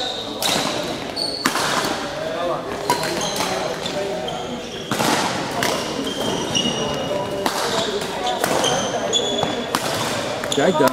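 Badminton rally in a large sports hall: sharp racket strokes on the shuttlecock every second or two, with shoes squeaking on the court floor between them.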